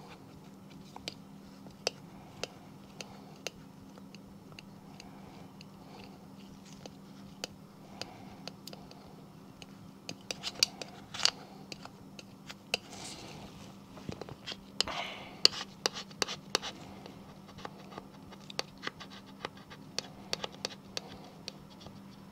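Faint scattered clicks and light scratching as gloved hands press and rub a vinyl stencil on a plastic golf disc to work out air bubbles, with a couple of longer rubs midway. A low steady hum runs underneath.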